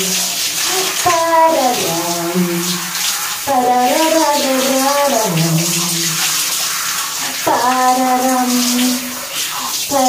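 Water spraying from a handheld shower head onto long hair, a steady hiss, while a woman sings wordless notes in three or four drawn-out phrases over it.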